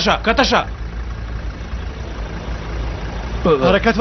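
Men's voices shouting briefly at the start and again near the end, over a steady low rumble.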